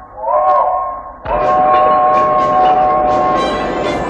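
Cartoon steam locomotive's chime whistle blowing a short toot, then a longer blast of several steady notes together, over a hiss and rhythmic chuffing of steam.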